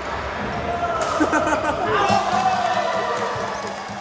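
Badminton rally on an indoor court: rackets hit the shuttlecock with sharp clicks about a second apart, and shoes squeak on the court floor over a background of voices in a large hall.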